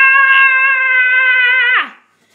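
A child's voice holding one long, loud, high scream that stays level and then drops in pitch and fades just before the end.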